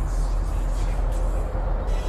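A steady, low rumbling noise with music underneath.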